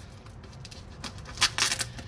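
A box being opened by hand, its packaging rustling faintly, then a short burst of crinkling and tearing about a second and a half in.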